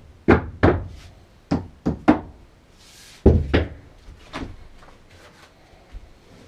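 Irregular sharp knocks on timber as pine framing of a bed base is knocked and fitted into place, about eight strikes in the first four and a half seconds. A brief hiss comes just before the loudest knock about three seconds in.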